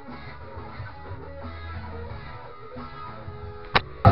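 Guitar music playing fairly quietly, with one sharp click shortly before the end.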